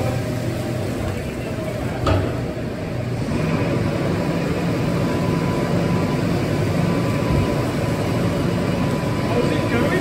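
A tractor engine running steadily while a tipping trailer's raised body empties sugar beet, the beet sliding and tumbling onto a pile on a concrete floor. One sharp knock about two seconds in.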